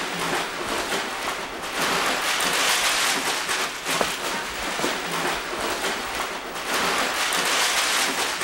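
Paper shopping bags rustling and crinkling as they are handled and stuffed, a dense continuous crackle of paper.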